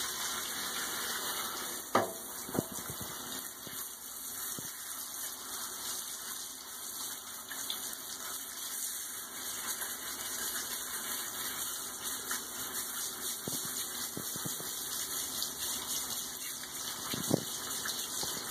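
Water hissing steadily from a handheld shower sprayer, rinsing the soap off a wet cat in a bathtub. A few brief sharp sounds cut through it, the loudest about two seconds in and another near the end.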